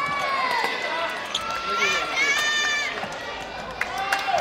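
Hubbub of a gymnasium during a junior badminton match: several short, high-pitched young voices call out over a steady background murmur, with scattered sharp clicks of shuttlecock hits.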